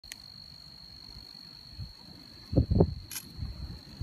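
A steady, high insect trill, typical of a cricket, runs unbroken throughout. A little past halfway comes a brief loud, low rumble, the loudest sound here.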